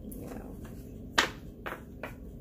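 Tarot cards handled and shuffled by hand, with a sharp slap of cards a little over a second in and a softer one shortly after.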